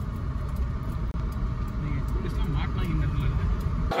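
Low, steady car rumble of engine and road noise heard from inside a car in traffic, with faint voices in the cabin.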